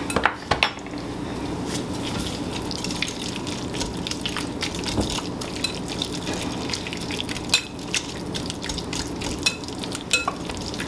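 Wire whisk stirring mashed potatoes with milk, cream and sour cream in a glass bowl, making a continuous, irregular run of quick clicks and taps as the metal wires hit the glass.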